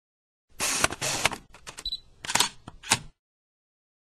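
SLR camera shutter sound effect: a quick run of shutter clicks for about a second, then a few single clicks with a short high beep about two seconds in, cutting off sharply about three seconds in.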